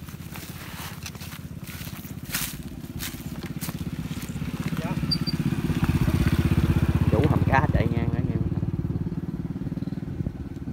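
A small engine running with a fast, even pulse, growing louder through the middle to a peak about seven seconds in and then easing off a little. A few sharp clicks come early, and a brief voice is heard near the peak.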